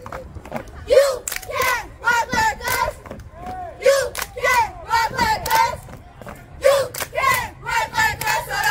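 A squad of middle-school girls shouting a cheer chant in unison, in short rhythmic phrases about one a second.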